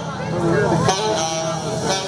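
People talking close to the recording over live party music, whose steady bass line runs underneath.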